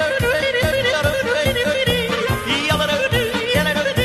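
A yodeling song: a voice warbling up and down in pitch over a steady beat of about three low thumps a second.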